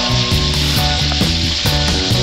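Meatballs sizzling as they fry in oil in a pan, with background music that has a steady beat.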